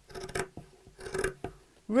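Scissors cutting through two layers of burlap (hessian): two snips through the coarse woven fabric, one just after the start and another about a second in.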